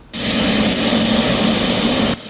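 Jet engines of a twin-engine cargo airliner running as it taxis, a loud steady rush with a low hum underneath, cut off abruptly near the end.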